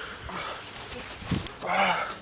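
A man's strained groans and gasps, the loudest a short groaning cry near the end.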